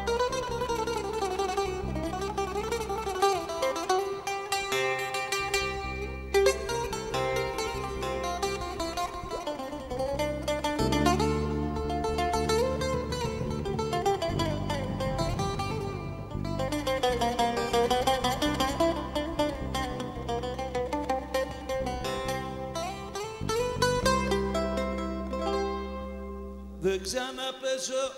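Greek bouzouki playing a melody with slides, over bass guitar and percussion: a live band instrumental passage.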